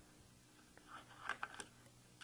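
A few faint, light clicks and taps about a second in, from a metal flip-up rear sight's mount being handled and seated onto the Picatinny rail of an AR-15 upper receiver.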